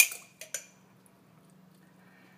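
A utensil clinking against a bowl while mashing mulberries into a sauce: one sharp clink at the start and two lighter ticks about half a second in. After that only a faint, steady low hum remains.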